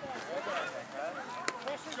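Faint voices of players calling and chattering, with one sharp click about a second and a half in.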